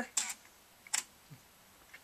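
Computer keyboard key pressed to capture a stop-motion frame in the animation software: a brief click just after the start and a single sharp click about a second in.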